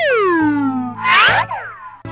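Cartoon sound effects over a children's music backing: a long pitched glide that rises and then falls, followed about a second in by a shorter, brighter falling glide.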